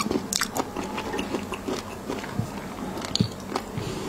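Close-miked ASMR eating sounds: chewing with many sharp, irregular wet mouth clicks, along with a plastic spoon working sauce against a ceramic plate.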